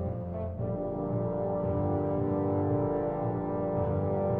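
Orchestral classical music: the orchestra holds long, sustained chords.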